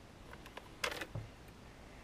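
Handling of a handheld inspection camera and its cable on a wooden workbench: a few faint clicks, a sharper click a little under a second in, and a soft knock just after.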